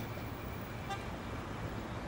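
Night street traffic: a steady low rumble of car and motorcycle engines, with a brief horn toot about a second in.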